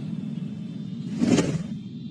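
A low, steady rumbling drone with a whoosh that swells about a second in and cuts off abruptly: dramatic sound effects laid over an action scene.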